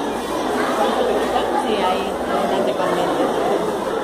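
Many voices chattering at once in a room, indistinct and continuous.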